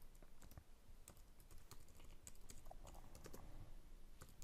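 Faint typing on a computer keyboard: a string of quick, unevenly spaced key clicks as a command is entered.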